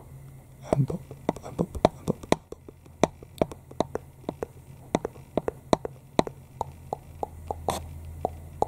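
ASMR poking sounds: a run of sharp little clicks, two or three a second and unevenly spaced, made as a pen is poked toward the camera. A steady low hum runs underneath.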